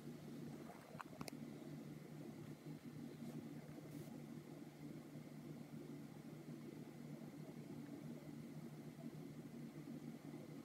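Faint steady low hum of room tone, with a couple of small clicks about a second in.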